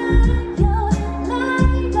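A live pop band performing: a woman's sung vocal line over electric guitar and a steady bass-and-drum beat of about two strokes a second, with a tambourine in her hand.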